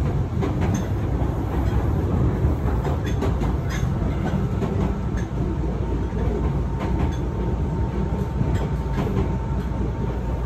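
A Hankyu commuter train running, heard from inside the car: a steady rumble of wheels on rail, broken by irregular clicks over rail joints. A faint steady high tone comes in about halfway through.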